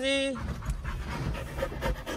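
A Rottweiler panting with its mouth open and tongue out, over the low rumble of the moving car.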